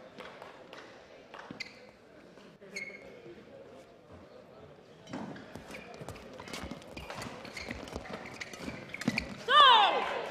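Badminton rally in a sports hall: scattered sharp shuttlecock hits off rackets and brief squeaks of court shoes on the floor. Near the end a player gives a loud, short shout as the point ends.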